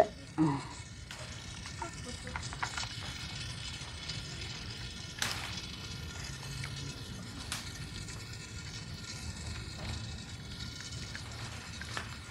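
Water trickling from a garden hose into a plastic bucket as hands scrub taro corms in the water, with a few light knocks.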